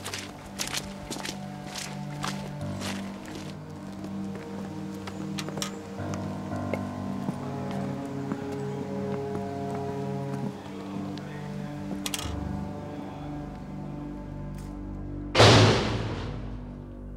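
Dark film score of low, held notes. Over the first few seconds it is joined by a run of sharp ticks, footsteps on a dirt path. About fifteen seconds in comes one loud, heavy thud, the loudest sound here, which rings and fades.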